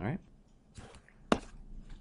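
A single sharp click about a second and a third in, from advancing the screen presentation to its next slide.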